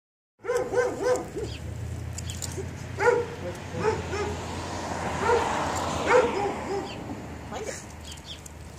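A dog yipping and whining repeatedly: a quick run of short, high yips in the first second, then single yelps and whines about once a second.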